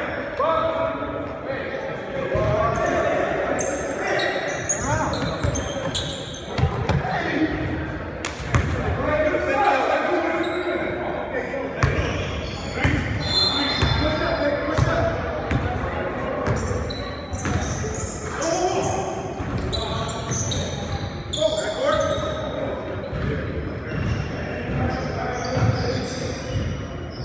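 Basketball game on a hardwood gym floor: the ball bouncing, sneakers squeaking and players shouting to one another, all echoing in a large hall.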